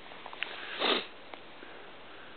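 A single short sniff close to the microphone, a little under a second in, with a few faint clicks around it.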